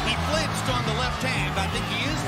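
Background music with a deep bass line stepping between held low notes, with a voice faintly mixed in.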